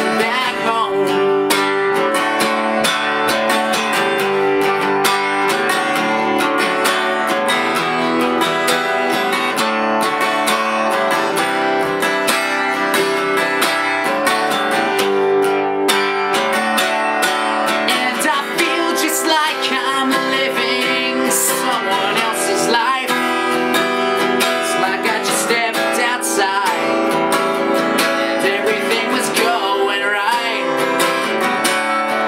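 Acoustic guitar strummed in a steady ballad with a man singing along, his voice clearer in the second half.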